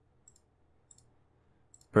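Three faint computer mouse clicks, spread about half a second to a second apart.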